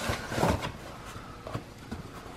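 Cardboard shipping box rustling and scraping as books are slid out of it, loudest about half a second in, then faint handling noise.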